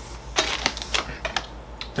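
Bubble wrap being popped by hand: a handful of sharp separate pops at irregular intervals.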